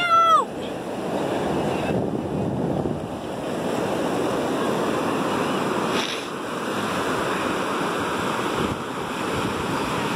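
Ocean surf washing up the beach in a steady rush, with wind on the microphone. A brief high-pitched voice sounds right at the start.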